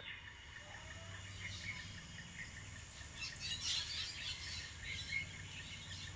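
Faint birdsong: scattered short high chirps from several birds, busiest about three to four seconds in, over a faint steady low hum.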